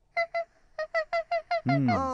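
Rapid run of short, high, quack-like honking calls all on one pitch, about six a second: two calls, a brief pause, then about six more, in the manner of a cartoon duck. A low 'mm' from a voice comes in near the end.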